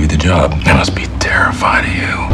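Speech only: a man talking, with a steady low hum underneath.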